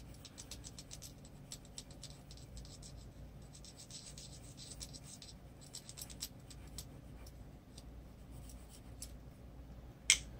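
White colored pencil scratching on paper in faint, quick back-and-forth strokes that come in short runs, pressed hard to lay white over the skin tones.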